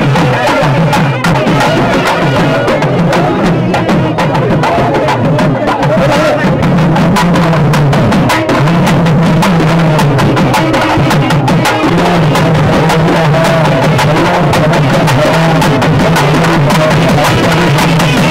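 Traditional South Indian temple procession music: thavil barrel drums played with fast, dense strokes, with a wavering melody line above them. It is loud and continuous.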